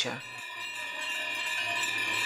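Bells ringing together, their overlapping tones blending into a steady chiming.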